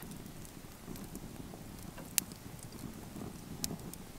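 Fire in an outdoor fire pit crackling softly, with two sharp pops, one about two seconds in and one near the end.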